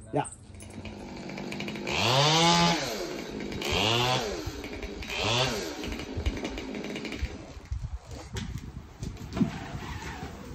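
Chainsaw up in a tree revving three times, each rev rising and falling in pitch, followed by fainter scattered clicks and crackles.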